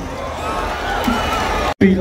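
A man's voice, fainter than the commentary around it, over crowd hubbub; the sound drops out completely for an instant near the end.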